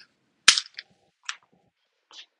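A whiteboard marker's cap pulled off with a sharp pop about half a second in, followed by a few fainter, shorter clicks and rustles.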